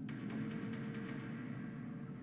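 Quiet film soundtrack music: a steady held tone over a low rumble, with a few faint ticks in the first second.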